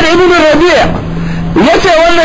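A man's voice preaching loudly in drawn-out, wavering phrases. The voice breaks off for about half a second just before the middle, when a low steady hum is left.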